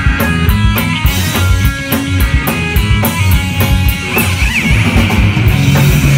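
Punk band playing live: distorted electric guitar chords over a fast, driving drum beat. A high held note comes in about four seconds in.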